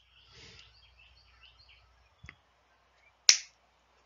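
A single sharp finger snap about three seconds in, the cue for students to read the word aloud, with a fainter click about a second before it.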